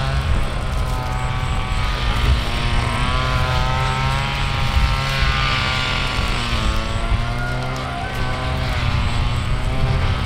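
An engine running steadily, with a constant low hum and a pitch that wavers slowly up and down.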